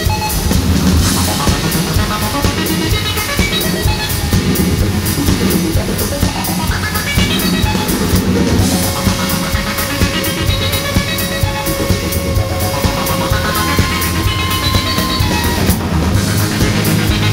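Electronic rock band playing live with no vocals: drum kit keeping a steady beat under electric guitar. Long held notes come in about halfway through.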